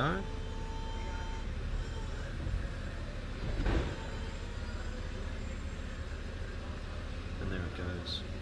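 Mercedes-Benz CLK350 cabriolet's electro-hydraulic fabric roof folding back, its mechanism running with a steady hum, a short steady whine at the start and one clunk a little under four seconds in.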